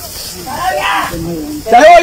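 Voices shouting "ya" during a rescue effort, with a loud, drawn-out shout starting near the end, over a faint steady hiss.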